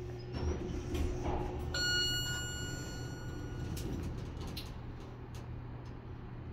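Montgomery Vector traction elevator arriving at a floor: a single arrival chime rings out about two seconds in and fades over about two seconds, and the car doors slide open, over a steady low hum.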